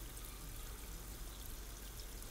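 Cold tap water spraying steadily onto boiled chicken livers in a stainless steel colander in a sink.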